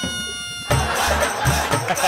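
A comic sound effect of falling, gliding tones dies away in the first moment. Then rhythmic background music with a steady drum beat starts, under a laugh from the judges' cut.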